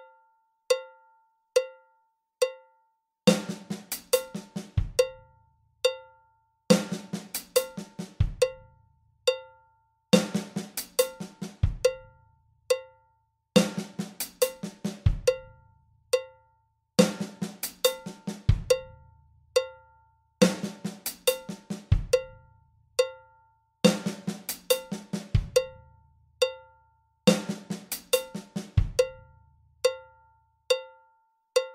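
Roland V-Drums electronic kit playing a 16th-note fill: a right-hand snare stroke, ghosted left-hand doubles on the snare, right-hand doubles on the hi-hat, ending on the bass drum. It comes once a bar in the second half, repeated round and round over a metronome click at 70 beats per minute. The first few seconds are the click alone.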